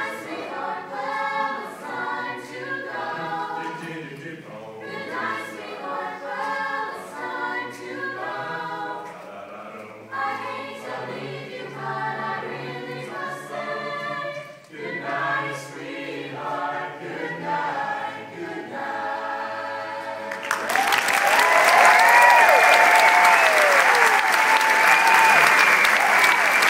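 Mixed high-school a cappella chorus singing the end of a song. About twenty seconds in, the audience breaks into loud applause with cheering and whoops, the loudest part.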